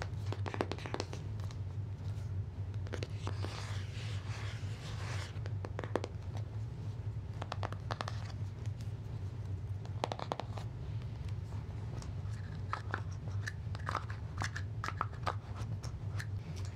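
Fingernails tapping and scratching on a cardboard tarot deck box, in irregular crisp taps and short scratchy runs, over a steady low hum.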